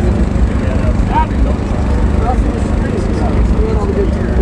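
Candy floss machine running: a steady low mechanical hum, with faint voices over it.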